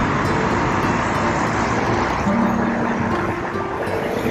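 Steady hiss of road traffic going by on the adjacent street.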